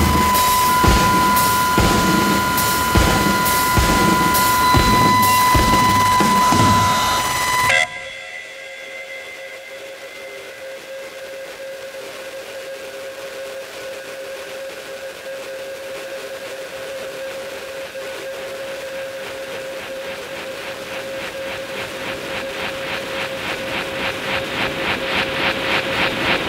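Contemporary electroacoustic concert music: a loud, dense texture of steady high whistle-like tones over rapid pulsing, which cuts off abruptly about eight seconds in. It gives way to a quieter sustained drone on one steady tone, with a fast pulsing that swells louder toward the end.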